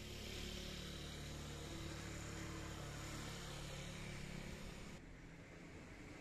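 A steady low mechanical hum over an even background hiss, like engine noise heard from a distance. It thins out about five seconds in.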